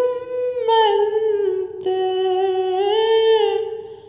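A woman's voice singing a devotional song without accompaniment, holding long, slowly gliding notes, with a brief break about two seconds in and fading near the end.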